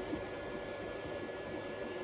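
Steady fan hiss from a Prusa 3D printer running near the end of a print, with a faint steady whine.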